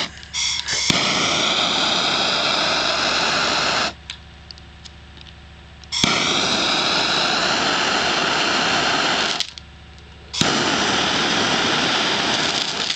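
Handheld gas torch flame hissing steadily, shut off twice for a second or two and relit each time, as it heats magnesium igniter bits on a block of plaster-based thermite that is slow to light.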